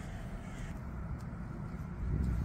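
A bird calling over a steady low rumble.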